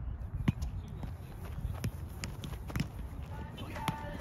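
Roundnet (Spikeball) rally: about five sharp slaps and pops as the small rubber ball is hit by hands and bounces off the trampoline net, with players moving on the grass. Players' voices come in near the end.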